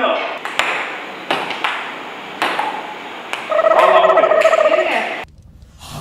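Table tennis ball clicking off paddles and table, single sharp ticks about every half second to second. A person's voice calls out loudly over the later part. The sound drops away abruptly about a second before the end.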